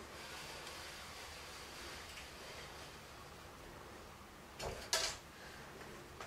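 Pencil scraping faintly and steadily across plywood as a metal T-square is slid slowly along the board's edge. A brief louder scrape and knock come near the end.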